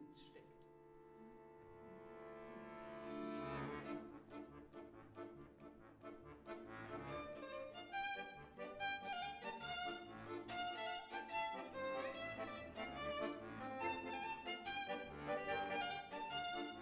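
Violin and accordion playing klezmer music: a held chord swells over the first few seconds, then from about seven seconds in a livelier melody with a steady rhythmic pulse takes over.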